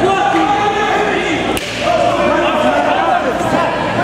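Spectators shouting and yelling around the fight cage, many voices overlapping, with one sharp smack about a second and a half in.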